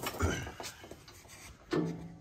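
Handling noise under a tractor: a knock with rubbing at the start, then a few faint clicks, and a short burst of a man's voice near the end.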